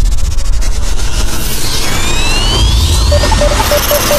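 Intro sound design under an animated logo: a deep rumble beneath a loud hiss, with rising sweeps in the second half and a quick repeated high note starting near the end.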